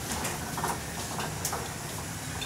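Hospital bed being wheeled along a corridor: casters rolling on the floor and the frame rattling steadily, with a few light clinks.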